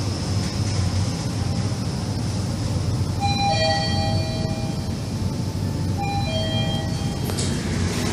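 Mitsubishi machine-room-less elevator car descending, with a steady low rumble of the ride. A two-note electronic chime, a higher note then a lower one, sounds twice about three seconds apart.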